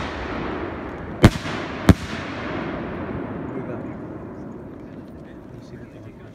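Aerial firework shells bursting: two sharp reports, about a second and two seconds in, over a rolling echo that slowly fades away.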